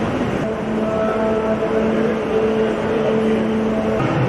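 A loud, noisy din with a steady held note, like a musical drone, coming in about half a second in and holding.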